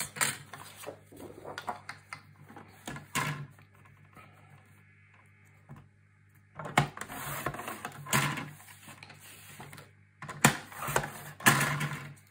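Cardstock being handled on a sliding-blade paper trimmer: the sheet rustles and taps as it is slid into place, then the blade carriage scrapes along the rail for a few seconds to cut off a strip. A couple of sharp knocks follow near the end as the cut strip and the trimmer are handled.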